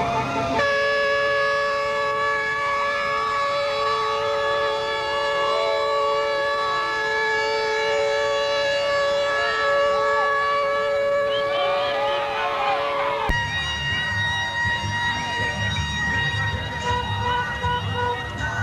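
A vehicle horn held down in one long, steady, unwavering tone; about thirteen seconds in it breaks off suddenly and another steady horn tone at a different pitch carries on.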